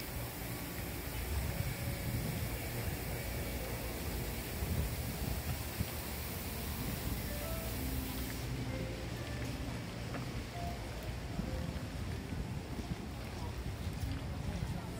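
Street ambience in a pedestrian shopping street: scattered voices and some background music over a steady low rumble of wind on the microphone.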